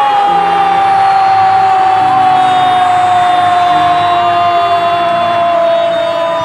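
A match commentator's long, held goal shout, one drawn-out call that sinks slowly in pitch, over stadium crowd noise.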